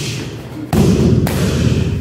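A kick landing on a hand-held Muay Thai kick shield: a sudden heavy thud about two-thirds of a second in, with a second hit about half a second later.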